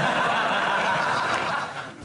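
Studio audience laughing together, a steady wash of laughter that dies away near the end.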